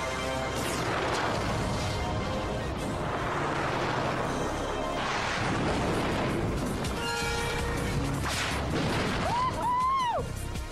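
Action-cartoon soundtrack: dramatic music mixed with explosions and crashes, continuous and loud, with several heavier blasts through the middle.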